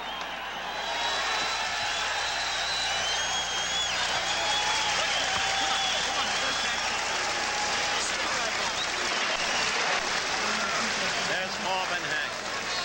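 Large arena crowd cheering and applauding steadily at the end of a boxing round.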